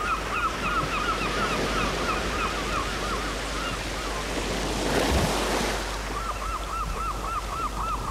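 Surf washing over a rocky shore, with a wave surging in about five seconds in. Over it a bird calls in quick runs of short, repeated notes, about four a second; the calls break off in the middle and start again near the end.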